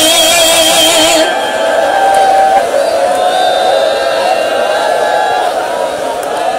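A man's melodic chanted recitation: a held, wavering note breaks off about a second in, and the chanting carries on more softly with drawn-out, wavering tones.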